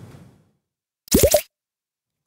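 A short cartoon-style "bloop" sound effect, its pitch gliding quickly upward, about a second in, marking the programme's transition into a break.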